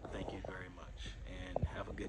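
A man speaking in a low voice, too softly for the words to be made out.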